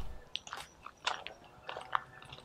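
Footsteps crunching on a gravel lane, a few faint separate steps.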